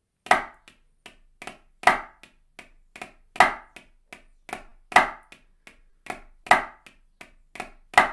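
Drumsticks on a practice pad playing a repeating flam exercise: a loud stroke about every one and a half seconds, with several softer strokes between. The right-hand flam is accented and the left-hand flam is played soft.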